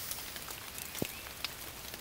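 Light rain falling, a faint steady hiss, with a single sharp tick about a second in.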